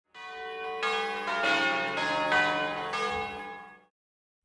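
Bells ringing: about half a dozen overlapping strikes at different pitches, each ringing on, dying away just before the end.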